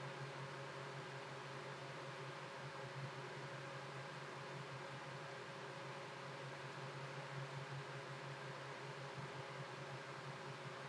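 Faint, steady room noise: an even hiss with a low, constant hum and no distinct events.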